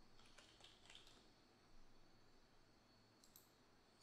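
Near silence with faint computer keyboard typing: a quick run of key clicks in the first second or so, then a couple more clicks about three seconds in.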